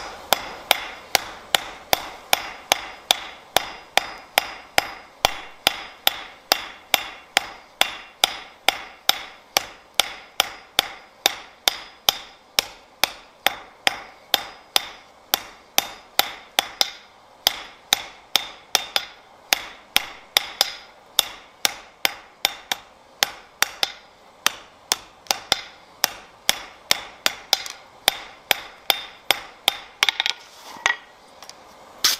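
Hand hammer striking a red-hot iron bar on a steel anvil in a steady rhythm of about two and a half blows a second. Each blow rings briefly, and there are a couple of short breaks near the middle.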